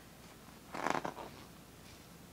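A large paper booklet page being turned, one brief papery rustle about a second in.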